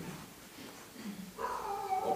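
A short lull, then a person's voice starting a little past halfway in, a drawn-out vocal sound that falls slightly in pitch.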